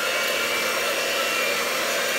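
Electric mixer running steadily at medium speed, its whisk beating raw egg whites that have not yet begun to foam, with a constant motor hum and a faint high tone.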